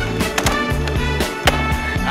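A pop-soul song with a steady beat and no singing in this stretch, with several sharp clacks of a skateboard on a smooth floor: the tail popping and the board landing in flatground tricks. The loudest clack comes about one and a half seconds in.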